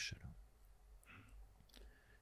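Near silence: room tone with a few faint mouth clicks from a speaker close to the microphone.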